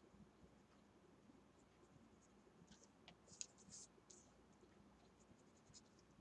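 Near silence, with a few faint scratchy strokes of a colouring tool rubbing ink onto cardstock, clustered around the middle.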